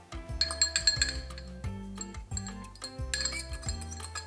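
Background music with held tones and bright, chiming high notes about half a second in and again about three seconds in.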